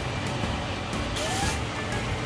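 Glass lid lifted off a simmering pan of pakbet: a short hiss just over a second in, over a steady low hum.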